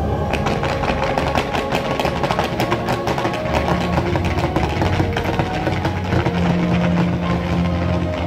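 Fireworks firing in rapid volleys, many sharp cracks and pops in quick succession, over show music with long held low notes.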